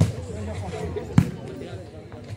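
An ecuavoley ball struck hard by hand, one sharp slap about a second in, over the steady chatter of spectators.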